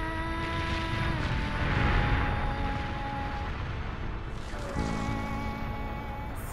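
Dramatic soundtrack score of held notes that change pitch a few times, over a deep rumble that swells about two seconds in.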